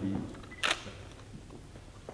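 A single camera shutter click about two-thirds of a second in, sharp and brief, over a low room murmur.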